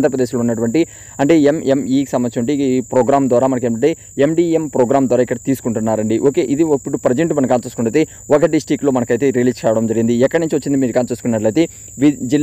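A man's voice talking steadily in Telugu, with a faint, steady high-pitched whine behind it.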